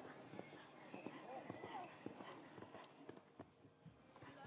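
Hooves of a show-jumping horse cantering on a sand arena: a quick run of faint, soft thuds. Faint voices can be heard behind them.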